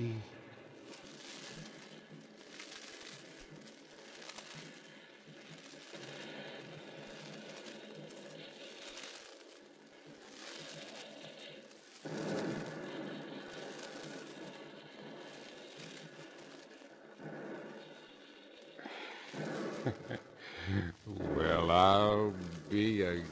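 Soft rustling and crackling of brush: a radio-drama sound effect of men crawling through briar, over the steady hiss of a transcription disc. It swells and fades in irregular waves, and low voices come in near the end.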